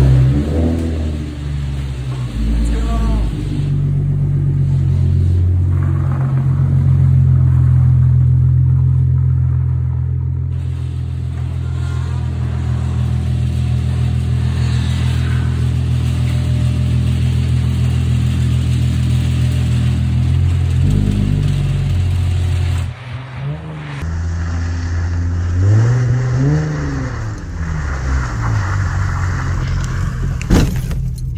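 Ford Mustang engine running, with revs rising and falling in the first few seconds, then a long steady stretch. It cuts off suddenly about three-quarters of the way through and resumes with another rev up and down.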